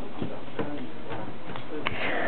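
Low, faint voices over a steady hiss, broken by a few short, light clicks: one just after the start, one about half a second in, and a sharper one near the end.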